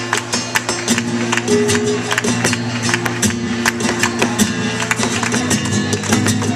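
Live flamenco in the soleá por bulerías rhythm: an acoustic flamenco guitar playing under a steady run of sharp hand-claps (palmas).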